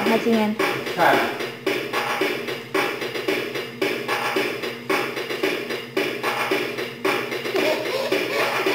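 Children's toy keyboard playing its built-in electronic tune with a steady drum beat, about two beats a second.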